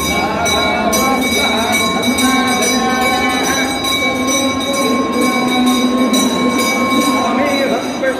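Temple bells ringing continuously in rapid strokes, with sustained high ringing tones, over men chanting.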